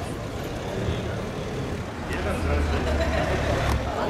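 A vehicle engine running, a low steady drone that grows stronger about halfway through, under people talking nearby.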